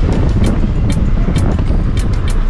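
Car driving along a road, heard from inside with the window open: a steady, loud rumble of road and wind noise. Music with a regular ticking beat of about two ticks a second plays along with it.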